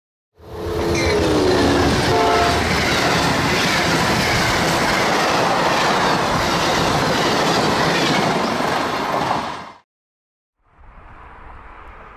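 A passenger train passing close at speed. Its horn sounds about a second in, falling slightly in pitch, over the steady noise of the cars rolling by. That noise cuts off abruptly near the end and gives way, after a brief gap, to a quieter steady outdoor background.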